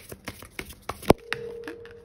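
A deck of oracle cards being shuffled and handled: a run of quick, papery clicks and snaps, with one sharp snap about a second in.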